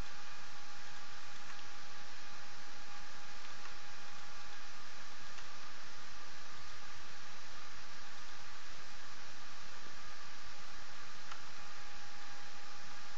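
Steady hiss of a recording's background noise with a faint steady tone running through it.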